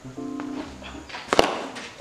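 Background music, with one sharp crack of a cricket bat striking the ball a little over a second in.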